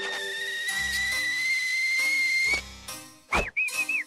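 Cartoon whistle sound effect: one long, high whistle rising slightly in pitch for about two and a half seconds. After a short gap it gives way to a quick swooping whistle and a run of short chirping whistles near the end.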